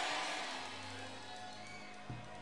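Quiet background music of sustained, held notes, slowly getting softer as a voice dies away in the hall's echo.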